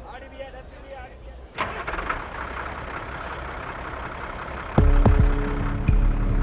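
Bus cabin noise heard from inside a moving coach: a steady rush begins about one and a half seconds in, and a much louder low engine rumble takes over near the end.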